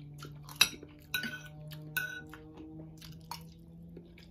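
Metal fork and spoon clinking and scraping against ceramic plates while eating, a few sharp clinks with a short ring, the loudest a little over half a second in, over a faint steady low hum.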